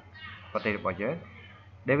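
A person's voice speaking a few short phrases, then a pause of under a second before speech resumes near the end.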